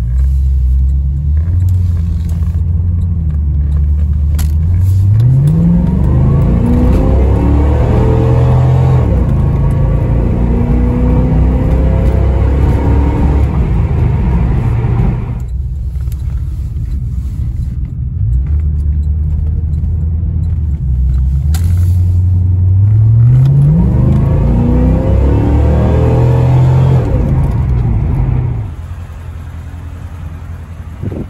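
C4 Corvette's 350 V8 heard from inside the cabin while driving, accelerating twice: the engine note climbs steeply about five seconds in and again a little past twenty seconds in, each time settling back to a steady cruise.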